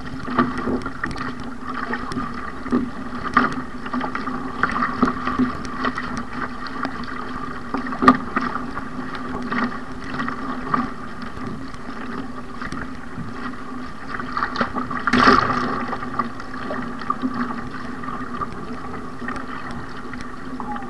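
Water rushing and splashing along an ocean ski's hull as it is paddled through choppy sea, with a splash from a paddle blade on each stroke and wind on the microphone. A louder splash comes about 15 seconds in.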